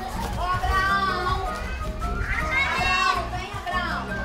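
Young children's voices calling out as they play, with music underneath.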